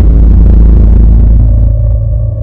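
Deep cinematic boom of a logo intro sting: a loud, low rumble that slowly fades, with a steady drone-like tone coming in near the end.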